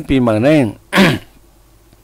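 A man says a few words, then clears his throat once, sharply and briefly, about a second in.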